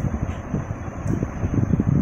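Irregular rumbling noise of air buffeting the microphone, like wind noise.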